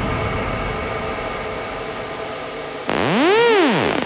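Electronic dance track in a breakdown: a sustained synth chord over a hiss slowly fades. Near the end, a synthesizer tone sweeps up and back down in pitch over about a second.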